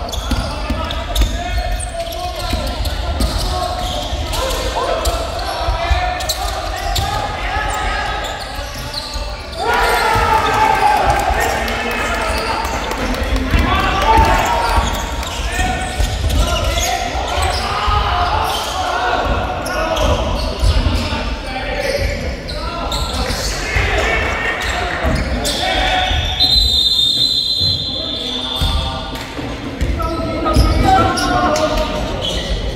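Basketball being dribbled on a hardwood gym court, its bounces ringing in a large hall, with players' voices calling out throughout. A long, high, steady whistle sounds near the end.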